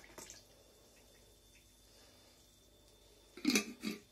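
Milk trickling and dripping from a plastic bottle into a glass of coffee, faint and brief near the start. A short louder sound comes near the end.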